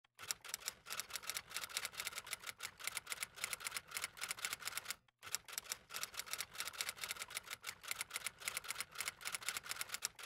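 Typing sound effect: rapid key clicks, about eight a second, matched to text appearing on screen, with a brief pause about five seconds in.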